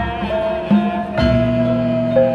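Javanese gamelan ensemble playing in pelog tuning: bronze metallophones struck with mallets, their notes ringing on, with a deep low stroke about a second in.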